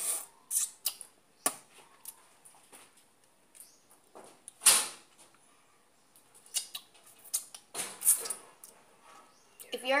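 Close-up mouth sounds of someone eating: scattered lip smacks and small chewing clicks, with one louder short rush of breath about halfway through.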